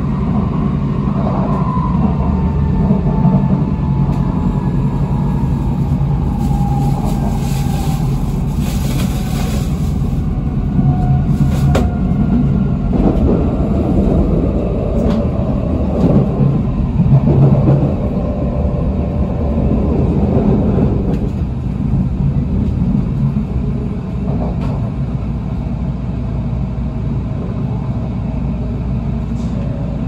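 Cabin running noise of a Kyushu Shinkansen train at speed: a steady rumble of wheels and track, with a faint whine that slowly falls in pitch over the first dozen seconds.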